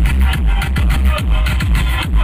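Loud electronic dance music with heavy, pounding bass and a rapid run of short falling bass sweeps, played through a large DJ sound system.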